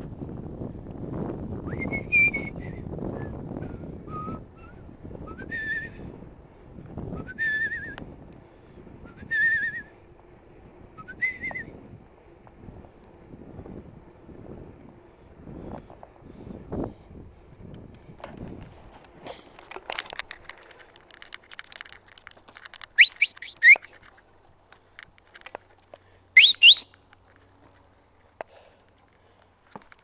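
A person whistling a slow string of short notes, about one every two seconds, over wind rumbling on the microphone. Later the wind drops away, leaving scattered clicks and two sharp upward whistles near the end.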